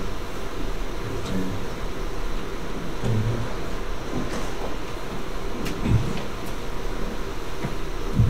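Meeting-room background noise: a steady hiss with a constant low hum, a few faint low murmurs, and a soft thump about six seconds in.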